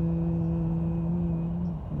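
A person humming one long, steady low note with closed lips. It breaks off near the end and starts again, like a drawn-out 'mm… hmm'.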